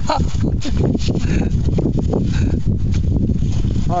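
Wind buffeting the microphone: a steady low rumble broken by irregular thumps.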